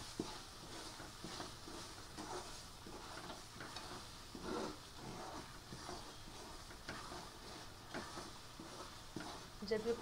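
Wooden spatula scraping and stirring roasting gram flour (besan) in a frying pan, in irregular strokes over a faint sizzle from the little water sprinkled into the hot besan.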